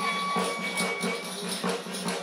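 Traditional folk music: tambourine jingles shaking in a steady rhythm under a long held melody note that fades out about halfway through.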